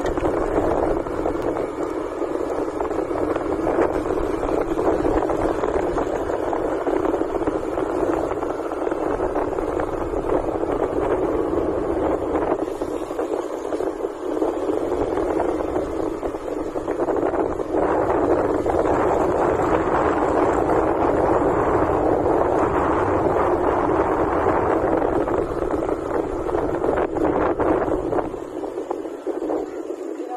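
Steady rush of wind buffeting the microphone of a camera riding on a moving motorcycle, with road noise from the ride mixed in; it eases a little near the end.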